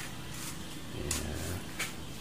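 Upper freezer door of an LG two-door refrigerator being pulled open, with two short sharp clicks about a second in and near the end.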